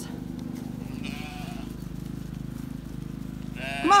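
A single faint bleat from a Zwartbles sheep about a second in, over a steady low hum. A woman's loud sing-song herding call starts near the end.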